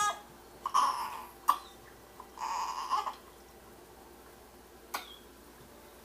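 A newborn baby making two short, breathy fussing sounds, one about a second in and one about two and a half seconds in, with a light click between them and another near the end.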